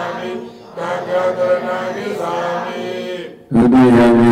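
Voices chanting a Buddhist prayer in recitation on held, steady notes, with a short pause about half a second in. Near the end a louder, deeper chant sets in.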